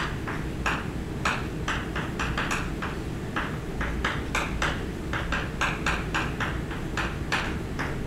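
Chalk writing on a blackboard: a run of short, irregular taps and scratches, one with each stroke of a letter, over a steady low hum.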